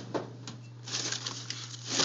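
Handling noise from a hand rummaging among cables and parts around a desktop computer: a sharp click just after the start, then rubbing and rustling from about a second in. A steady low hum runs underneath.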